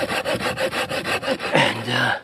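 Florabest folding garden saw cutting through a log of seasoned elm, a fast, even rasping rhythm of the blade in the dry hardwood. A short voiced sound from the sawyer comes in near the end.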